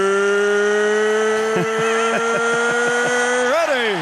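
A male ring announcer's voice holding one long, drawn-out shout of the word "ready", creeping slightly upward in pitch. The shout drops away near the end, over a hubbub of arena crowd noise.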